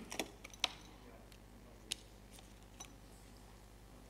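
Sharp clicks and light knocks of hardware being handled: a laptop and a USB-connected drive being plugged in and operated. There is a cluster in the first second, the sharpest about two-thirds of a second in, then single clicks about two and three seconds in, over a faint steady hum.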